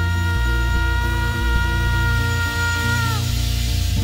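Live folk band playing, with bass notes moving under one long held high note that bends down and stops about three seconds in.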